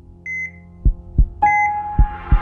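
Sound design of an animated logo sting in the style of a heart monitor: a short electronic beep about a quarter second in, low thumps in pairs like a heartbeat, and a held electronic tone with a higher beep starting about one and a half seconds in.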